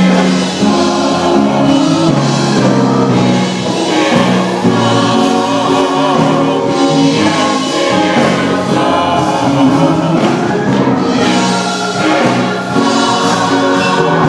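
Church choir singing a gospel song, many voices together on long held notes that change every second or so.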